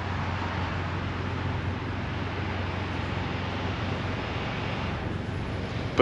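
Steady vehicle drone: a low engine hum under an even hiss of traffic noise, with nothing sudden standing out.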